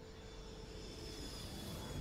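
Faint low background noise with faint steady hum tones, growing slightly louder toward the end.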